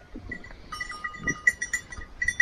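Țigaie sheep feeding together at a wooden hay rack, with a faint bleat about a second in. A rapid high-pitched ticking runs through the second half.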